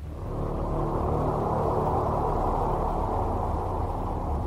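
A steady low rumble, swelling up just before and holding even, used as a sound effect to open the spoof trailer.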